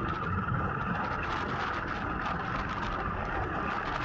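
Royal Enfield Classic 350 single-cylinder motorcycle running steadily on the move, with steady wind and road noise on the handlebar-mounted camera's microphone.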